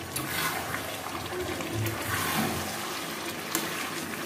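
A spatula stirring chicken curry with potatoes in a metal kadai, the wet gravy sizzling and sloshing in strokes about a second or two apart, with one sharp clink of the spatula on the pan near the end.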